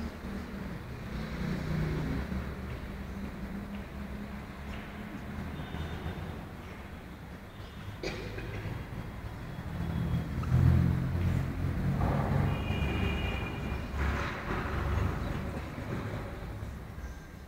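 Uneven low rumbling background noise, swelling louder in the second half, with a couple of brief high-pitched squeals and a single click about halfway through.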